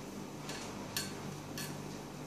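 Felt-tip sketch pen drawing short strokes on paper: three quick scratches about half a second apart, the middle one the loudest, over a faint steady low hum.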